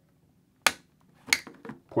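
LS2 Stream helmet face shield being pushed onto its tool-less quick-release side mount, clicking into place: two sharp clicks about two-thirds of a second apart, then a few lighter clicks.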